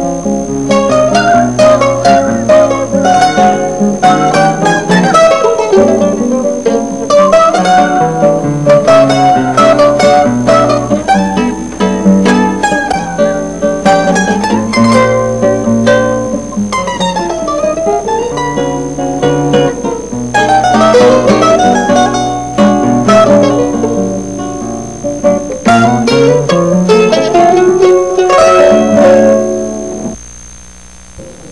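Instrumental duet of mandolin and acoustic guitar: quick plucked melody runs on the mandolin over the guitar's bass notes and chords.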